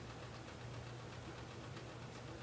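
Faint room tone: a steady low hum under a soft hiss.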